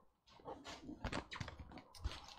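Crumpled newspaper packing and bubble wrap rustling and crinkling as they are handled inside a cardboard box. The sound is an irregular run of short crackles starting about a third of a second in.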